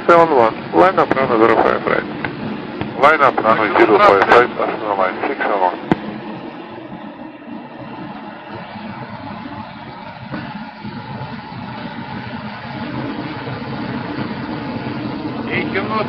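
Talking for the first few seconds, then a steady low vehicle engine hum with road noise, as heard from inside a car.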